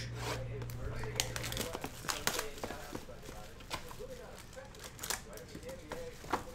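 Cardboard trading-card boxes being opened by hand: flaps pried up and torn open, with crinkling and a scatter of sharp clicks and taps.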